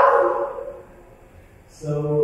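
A raised human voice from a projected stage-play recording, heard through the room's speakers. One drawn-out call trails off about half a second in, and another begins near the end.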